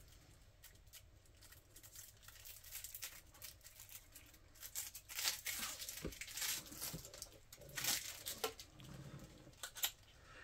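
Plastic shrink-wrap on a boxed card deck being picked at and peeled by hand, crinkling and tearing in faint, irregular crackles that start a couple of seconds in and grow busier toward the end.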